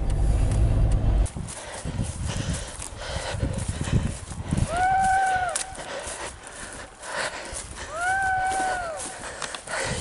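Two long, drawn-out calls from a huntsman's voice calling to hounds, each rising, holding and falling in pitch, about five seconds and eight seconds in. A car's engine rumbles briefly at the start.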